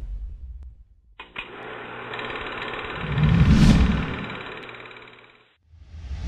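Logo-intro sound effects: a rapid mechanical clatter starts suddenly about a second in and cuts off near the end, with a deep whoosh swelling through its middle.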